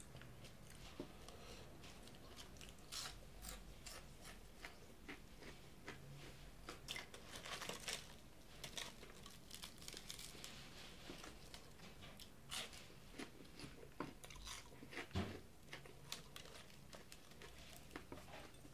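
Faint chewing and crunching of fried fast food, heard as many short crisp clicks scattered through the bites.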